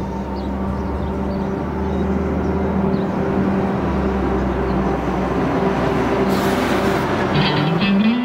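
Coach bus driving past: a steady low engine drone with tyre and road noise that grows louder toward the end. Guitar music comes in near the end.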